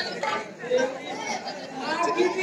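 Speech only: a man's voice talking, with background chatter.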